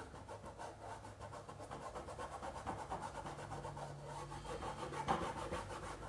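Paintbrush rubbing green paint into fabric in quick, light shading strokes: a faint, rapid scrubbing.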